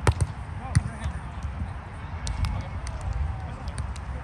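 A volleyball jump serve: a sharp slap of the hand on the ball right at the start, then a second sharp hit of the ball just under a second later.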